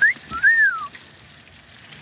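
A person's two-part wolf whistle: a short rising note, then a longer note that rises and falls, ending about a second in. Underneath, breaded catfish sizzles faintly in a pan of hot frying oil.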